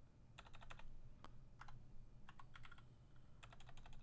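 Faint computer keyboard typing: several short runs of quick keystrokes with pauses between, as a word of code is typed and deleted.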